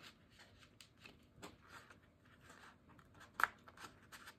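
Faint rustling and scraping of paper and cardstock as a sheet of patterned paper is pushed into a snug paper pocket, with a sharper rustle about three and a half seconds in.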